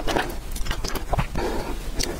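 Close-miked chewing and wet mouth sounds of someone eating soft novelty food, with quick irregular smacks and clicks.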